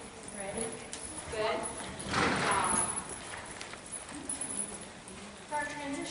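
Hoofbeats of a Tennessee Walking Horse cantering under saddle on soft arena footing, with a person's voice at times, loudest about two seconds in.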